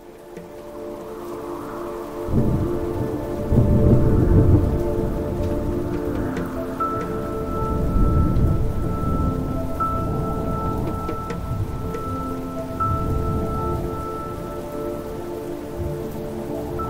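Rain and thunder over slow ambient music with long held notes. The thunder rumbles come in swells, loudest from about two to five seconds in.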